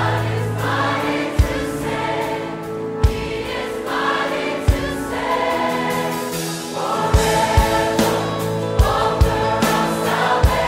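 Background music: a choir singing a gospel-style Christian song over sustained backing chords, with a low drum struck every second or two.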